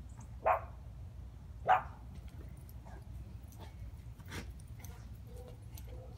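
A Shih Tzu puppy giving two short, high-pitched barks about a second apart.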